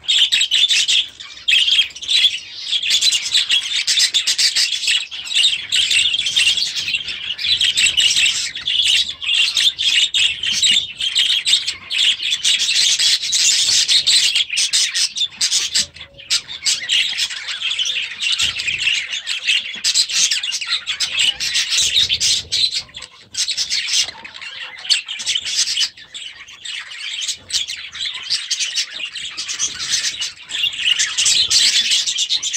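A flock of budgerigars chattering and chirping without a break, many birds at once, with a few brief lulls.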